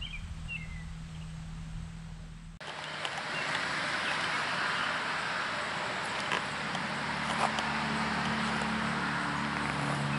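Outdoor ambience with a few short bird chirps at the start over a faint low hum. About two and a half seconds in it switches abruptly to a louder, steady outdoor hiss with a few faint clicks and a low hum underneath.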